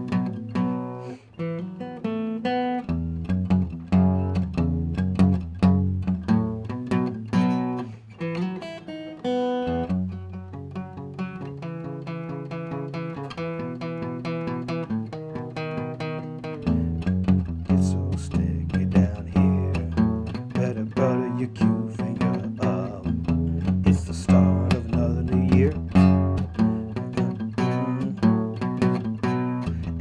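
Steel-string acoustic guitar played continuously, chords and single notes in a steady rhythm of strokes. The playing turns softer about ten seconds in and grows strong again some seven seconds later.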